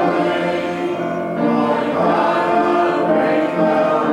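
Congregation singing a hymn together with keyboard accompaniment, in steady held notes.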